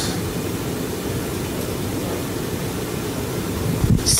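Steady, even hiss with no distinct event in it: the background noise of the room and recording between spoken answers.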